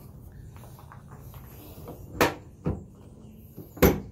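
Newly fitted tailgate handle on a 1999–2006 Chevrolet Silverado being worked and the tailgate latch releasing: two light clicks about two seconds in, then one sharp, loud latch clack near the end.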